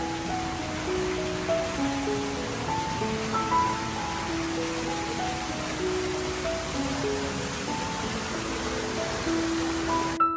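Slow piano music over the steady splashing hiss of small fountain jets spraying into a shallow pool.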